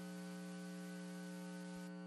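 Steady electrical mains hum, a low buzz made of several level tones, in the audio between programme segments. A faint hiss lies under it, and the higher hiss drops away near the end.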